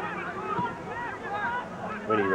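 Several voices shouting and calling at once across an open football ground, with no clear words: spectators and players calling during play.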